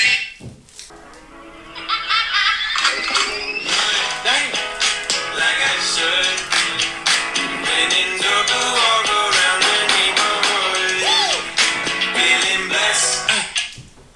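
Upbeat pop dance music with a steady beat and a melody line. It drops low for about the first second and a half, then comes back in full.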